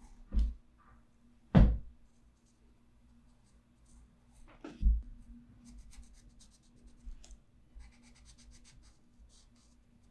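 Derwent Inktense watercolor pencil scratching in short strokes over a waxy pastel layer on paper, mostly in the second half. Three louder knocks come in the first five seconds.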